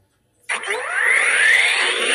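Electronic sound effect played through a talking Hulk action figure's small speaker: after a brief silence, a loud, noisy swell that rises in pitch starts about half a second in and keeps going, like a power-up effect.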